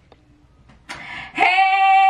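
A woman's voice calls out one long, held, sung-out exclamation starting about a second and a half in, steady in pitch and loud; before it there is only faint room sound.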